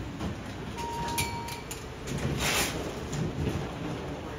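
Steady hum of an airport security hall, with a short electronic beep about a second in and a brief hiss a little after two seconds.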